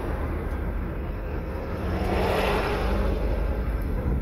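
Car engine and road noise heard from inside the cabin in slow traffic: a steady low rumble, with a broader swell of traffic noise about two seconds in.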